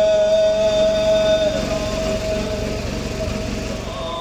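A male chanter holds the long final note of a Shia mourning chant (noha), amplified, and it fades out about two seconds in. Under it runs a steady low rumble.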